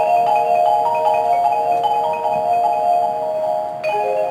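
A front ensemble of marimbas and vibraphones playing slow, ringing chords, with notes shifting as they sustain and a new chord struck near the end.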